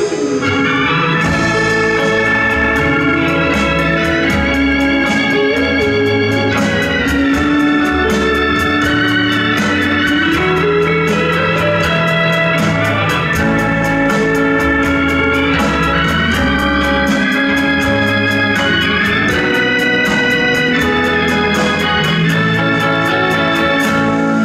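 Live instrumental electric-guitar band playing with a steady drum beat, an organ-voiced keyboard holding long chords, and electric guitars and bass in the 1960s eleki style. About ten seconds in, a line glides upward.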